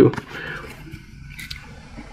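Faint rustle and slide of trading cards being handled, one card pushed past another, with a small tick about one and a half seconds in.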